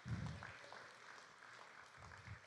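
Faint audience applause in a large hall, dying away, with a soft low thump right at the start.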